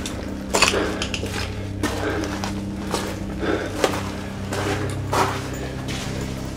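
Footsteps crunching and clinking along a muddy tunnel floor, one about every second, over a steady low hum.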